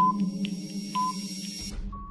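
Countdown-timer sound effect: a low steady hum with ticks and a short beep about once a second, cutting off shortly before the count reaches zero.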